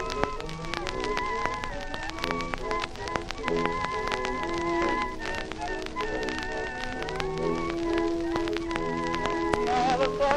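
Instrumental passage of an early acoustic 78 rpm recording: a wavering melody line over sustained accompanying chords, with constant crackle and clicks of record surface noise.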